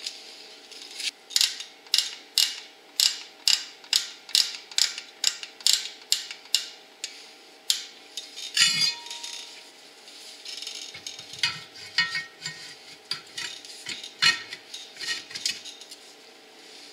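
Star-wheel adjuster screw of a Ford Bronco's rear drum brake clicking as it is turned, about two clicks a second, spreading the bottoms of the brake shoes out toward the drum to take up pedal travel. A short metallic rattle comes about nine seconds in, followed by more uneven clicking and scraping.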